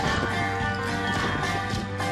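Upbeat banjo-led country music playing, with a troupe of cloggers' tap shoes striking the stage in quick rhythmic clicks over it.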